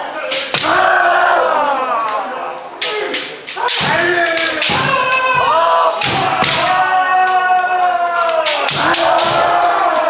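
Kendo practice: many voices of kendo practitioners giving long, drawn-out kiai shouts that overlap one another, punctuated by sharp cracks of bamboo shinai striking each other and the armour.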